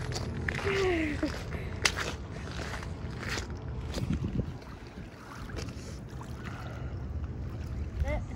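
Wind rumbling on the microphone along a pebbly shoreline, with scattered crunching steps on the stones and a brief voice about half a second in.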